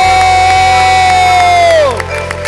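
A long, loud, high held vocal cry, a whoop of cheering, holding one pitch and dropping away near the end, with hand claps underneath.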